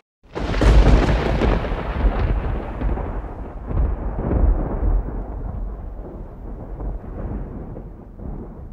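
A deep, thunder-like rumble that starts suddenly after a moment of silence and slowly fades away: an outro sound effect laid over the closing titles.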